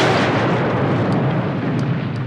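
A large fireball explosion, loud and slowly dying down.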